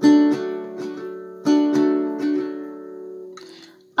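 Nylon-string classical guitar, fingerpicked: a chord at the start and another about a second and a half in, each followed by a few plucked notes, then left to ring and fade. A short breath is drawn near the end.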